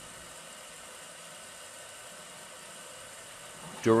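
New Matter MOD-t 3D printer running during its pre-print calibration while the hot end heats up: a faint, steady hum and hiss with no distinct strokes or changes.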